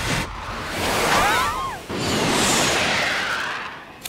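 Cartoon whoosh sound effects for the spies being sucked up through a jet's transport tube. A rushing whoosh carries a cluster of quick falling whistles about a second in, then a second long whoosh swells and fades.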